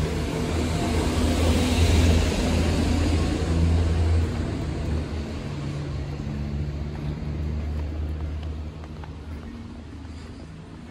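A motor vehicle's engine running close by, with a low steady hum and road noise that is loudest about two seconds in and fades away towards the end.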